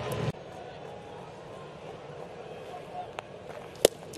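Ballpark crowd murmur, then near the end one sharp, loud pop as a 98 mph four-seam fastball smacks into the catcher's mitt on a swinging strike three.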